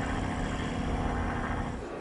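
Zeppelin NT airship's propeller engines running in flight, a steady drone that fades out near the end.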